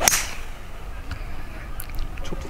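Golf tee shot with a 5-wood: the club swishes down and strikes the ball off the tee with one sharp crack right at the start, which fades within a fraction of a second.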